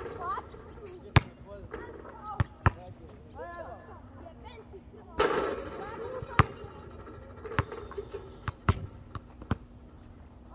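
A basketball bouncing on a hard court: sharp, irregularly spaced bounces, about ten in all, the loudest about a second in, with distant voices of the players calling out between them.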